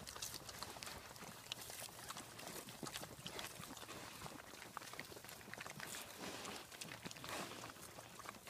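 Pigs eating feed pellets off the ground: a dense, steady run of crunching, chewing and smacking clicks, mixed with rustling as their snouts root through the pine straw.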